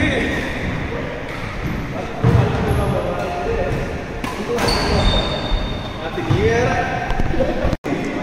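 Badminton doubles rally in a large hall: sharp racket strikes on the shuttlecock, about two seconds apart.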